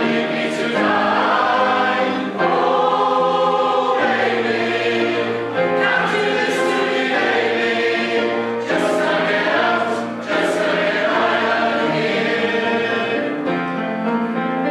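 A large mixed choir of men's and women's voices singing in harmony, in held phrases a few seconds long with short breaks between them.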